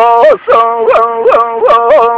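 A solo male voice singing Kurdish hore, unaccompanied. He holds a note, broken about three times a second by quick upward flicks and bends in the voice.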